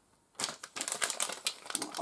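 Plastic LEGO minifigure blind bag crinkling in a quick run of small crackles as it is handled and squeezed, starting a moment in.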